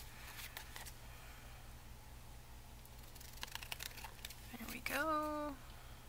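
Large scissors snipping through paper and card in two short runs of cuts, one near the start and one a little past the middle. A brief hummed voice sound comes near the end.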